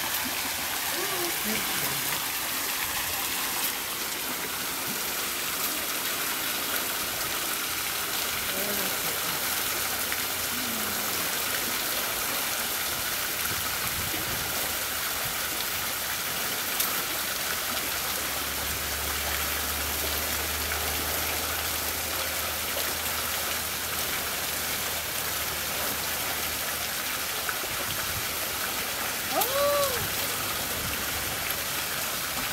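Hot-spring water spouting from a pipe on top of a boulder and splashing down the rock into the soaking pool: a steady rushing splash.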